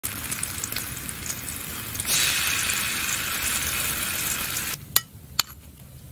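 Minced garlic and shallot sizzling in hot oil in a steel wok. The sizzle gets louder about two seconds in and breaks off shortly before five seconds. Two sharp clinks follow.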